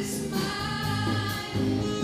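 Live band music with a woman singing lead over electric bass, guitar, keyboard and drums, her notes held and sustained.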